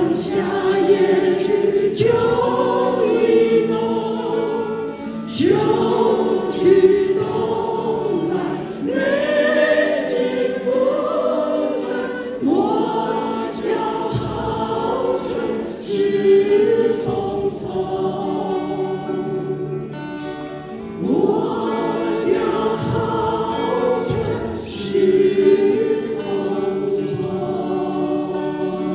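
Small mixed vocal ensemble singing in harmony in long held phrases, with acoustic guitars accompanying.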